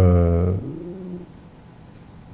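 A man's voice holding one drawn-out hesitation vowel for about half a second, trailing off lower, then quiet room tone until the end.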